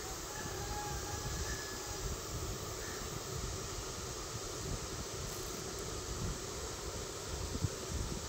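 Steady background noise: a low rumble with an even hiss above it, without distinct events.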